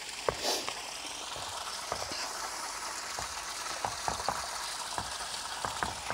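A steady hiss with scattered light clicks and crackles at irregular moments; no voice.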